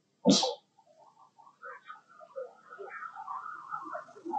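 Long-tailed macaques: a single sharp, loud burst of noise about a third of a second in, then a string of short high chirping calls that grow busier toward the end.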